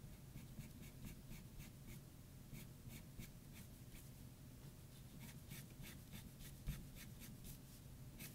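Pencil drawing on toned paper: faint runs of short, quick scratching strokes, about three to four a second, as lines are hatched in. A single soft thump comes near the end.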